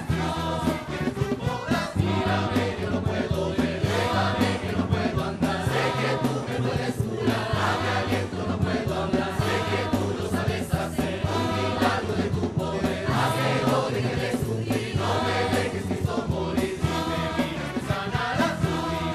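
Background film music: a choir singing over held low notes, playing without a break.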